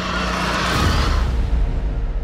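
Film trailer soundtrack playing: dramatic music and a dense rush of sound effects that swells loudest about a second in, then dies away near the end.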